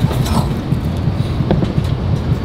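Cabin noise inside an Airbus A319 airliner: a steady low rumble, with a faint click about a second and a half in.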